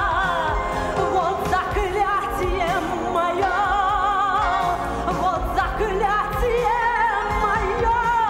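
A woman singing with a strong vibrato on long held notes, over a band accompaniment.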